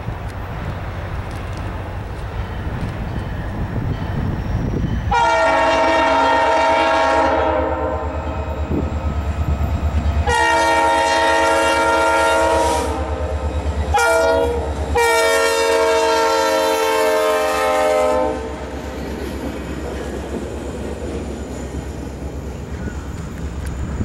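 EMD SD40-2 diesel locomotive sounding its multi-tone air horn in a long, long, short, long pattern, the grade-crossing warning, over the low rumble of its 16-cylinder two-stroke diesel engine. After the horn, the train's freight cars roll past on the rails.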